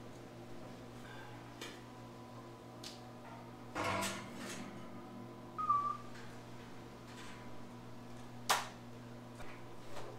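Scattered knocks and clatter of a person climbing down a ladder into a concrete pit and handling gear, busiest about four seconds in, over a steady low electrical hum. A brief squeak comes just before six seconds and a single sharp click near the end.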